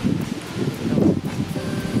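Wind buffeting the microphone outdoors, a rough irregular low rumble that swells about half a second in, with faint background music under it.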